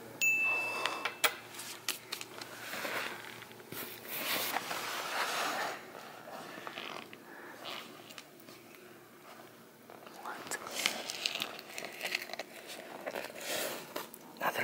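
Hands rummaging down between the tight cushions of an upholstered armchair, rustling in uneven bursts, with a brief high ding just after the start.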